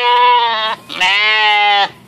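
Sheep bleating: a long bleat ends under a second in, and a second bleat follows about a second in and lasts almost a second.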